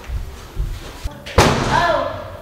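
A single loud slam about one and a half seconds in, sharp and sudden, made in anger.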